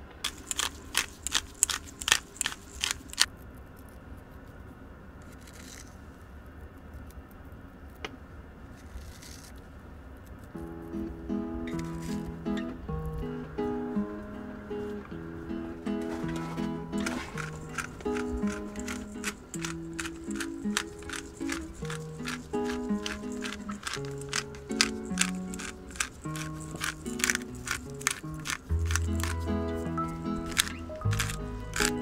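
Instrumental background music. It opens with a run of short clicks, a melody comes in about a third of the way through, and a fast, steady beat joins just past halfway.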